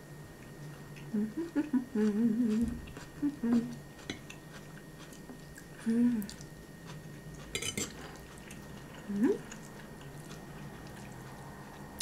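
A person eating, chewing with short closed-mouth "mmm" hums of enjoyment, one rising near the end. A fork clatters briefly on a plate about halfway through.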